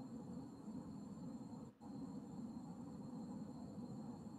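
Faint low rumbling background noise with a thin steady high whine over it, cutting out briefly a little before the middle.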